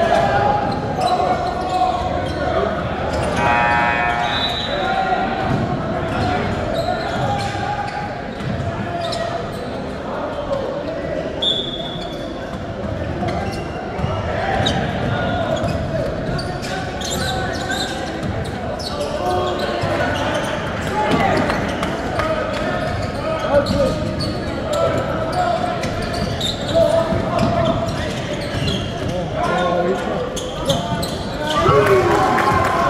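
A basketball bouncing on a gym's hardwood court during play, with players and spectators calling out. The sound echoes in the large hall.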